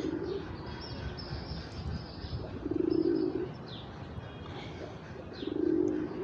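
A bird calling in the background: a low, pitched note repeated about every three seconds, with fainter high chirps in between.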